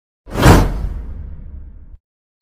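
A whoosh sound effect that swells in about a quarter second in and fades away over the next second and a half, for an animated subscribe-button graphic.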